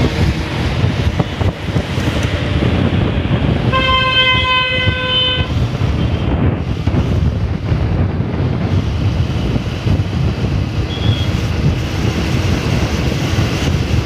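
Steady road and wind noise heard from a moving vehicle in city traffic. About four seconds in, a vehicle horn sounds once, held for about a second and a half.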